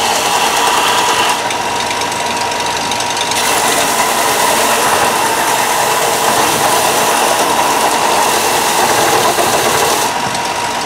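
Bench belt sander running with a steady whine, the abrasive belt grinding a flat edge onto a block of denim micarta. The grinding hiss gets brighter and harsher from about three seconds in, when an object is pressed harder against the belt.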